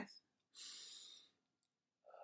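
A woman taking one deep, audible breath, a soft hiss starting about half a second in and lasting under a second. It is a demonstration of calming deep breathing.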